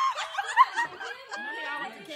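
A small group of people laughing and snickering, with bits of talk mixed in.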